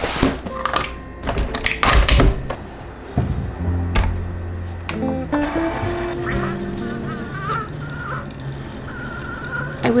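Keurig single-serve coffee maker being loaded and started: sharp clicks and knocks of the pod going in and the lid being shut, then a low hum from the machine about three and a half seconds in. Background music comes in about halfway.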